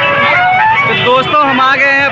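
Speech: a man's voice talking loudly, with no other sound standing out.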